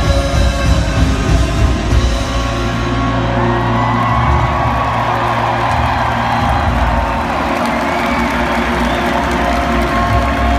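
A live indie folk-rock band playing an instrumental passage through a large arena PA, heard from far back in the audience, with the crowd cheering and whooping as the passage builds.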